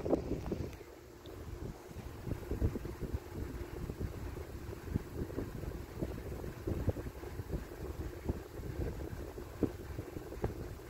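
Handling noise from a handheld camera: a low, uneven rumble with scattered soft knocks.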